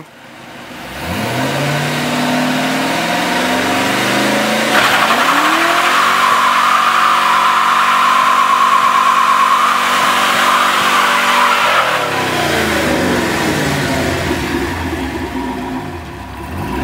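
Chevy LM7 5.3-litre V8 in a 1992 Nissan 240SX revving up for a burnout: the revs climb, jump to a high pitch about five seconds in, and are held there for about seven seconds while the rear tyres spin and squeal, then the revs drop away.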